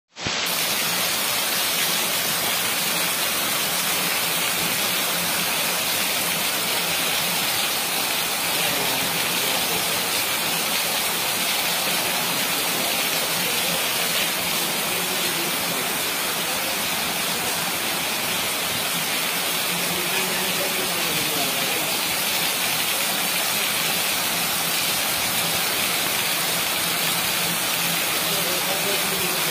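Heavy rain falling in a steady downpour, a dense, even hiss that holds at the same loudness throughout.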